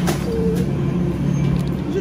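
A steady low machine hum made of several even tones, with no change in pitch or level.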